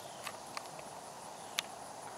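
A horse cantering on sand arena footing, its hoofbeats heard as a few faint, irregular knocks, one sharper about one and a half seconds in, over a steady faint hiss.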